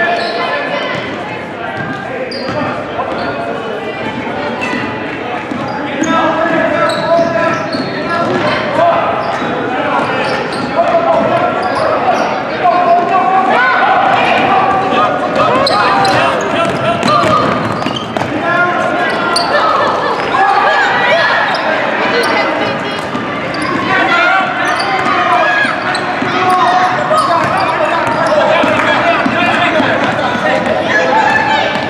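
Basketball bouncing on a gymnasium's wooden floor during play, under many overlapping spectators' voices shouting. The voices get louder about six seconds in.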